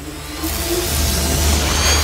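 Logo-intro music: a low steady drone under a rising swell of noise that comes in about half a second in and builds steadily louder.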